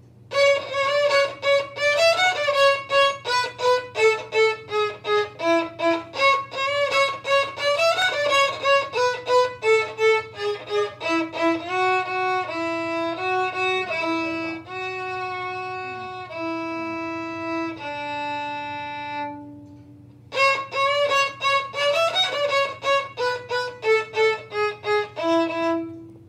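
Solo violin playing the second violin part of an Allegro: quick, short detached notes, then a stretch of longer held notes stepping downward, a brief pause about three-quarters of the way through, and quick notes again.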